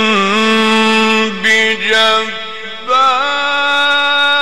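A male Quran reciter chanting in the melodic mujawwad style, holding long, ornamented notes on one drawn-out syllable. The voice dips briefly about two seconds in, then rises into a new, higher held note near the end.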